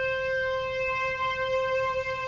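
A single flute note resynthesized by the NSynth WaveNet autoencoder, a neural network rebuilding the sound of a real flute. It is one steady held note with a bright stack of overtones.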